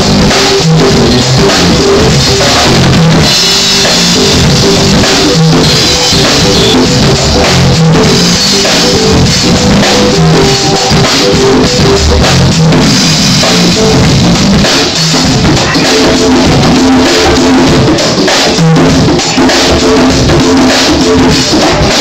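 Live band playing an instrumental groove: drum kit with bass drum and snare, congas, electric bass and electric guitar. Loud and continuous throughout.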